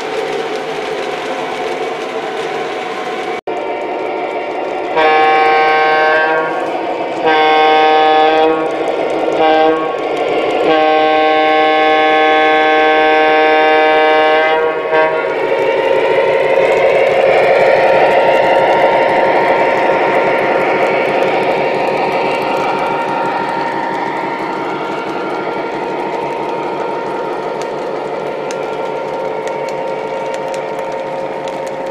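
Sound system of an O gauge MTH Premier BL2 diesel model blowing its multi-chime horn in a long, long, short, long pattern, the grade-crossing signal. Afterward the model's diesel engine sound and rolling wheels grow louder as it passes close, then slowly fade.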